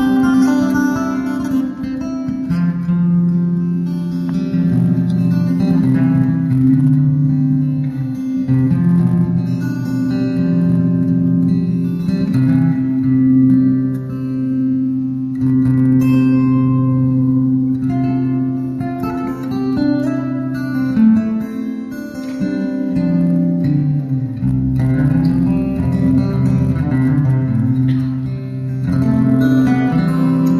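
Solo acoustic guitar playing an instrumental passage: a steady ringing drone note sounds throughout over bass notes that change every second or two.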